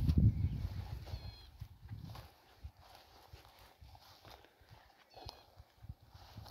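Footsteps through dry grass and weeds, with a low rumble on the microphone during the first second. A small bird gives two short high chirps, about a second in and near the end.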